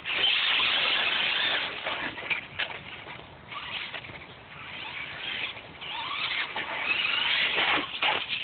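Traxxas Stampede VXL RC truck's brushless motor and drivetrain whining as it runs on asphalt. It is loud as it pulls away close by, fades as it drives off, then grows again, the pitch sweeping up under throttle as it comes back near the end.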